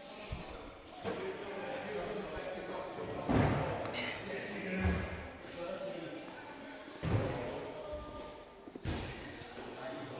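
Busy gym: background voices and a few heavy thuds on the floor, the loudest about three and seven seconds in, in a large echoing hall.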